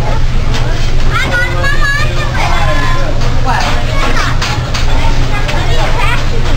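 Diners' voices and restaurant chatter over a steady low rumble, with the short clicks of a teppanyaki chef's metal spatula and fork on the steel griddle.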